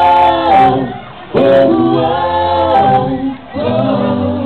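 A group of people singing together in long held phrases, with short breaks about a second in and again near the end.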